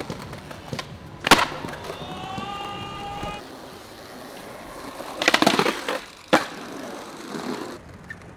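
Skateboard being ridden: a sharp clack of the board about a second in, wheels rolling over concrete, then a clatter of board hits around five seconds in and another sharp clack a second later.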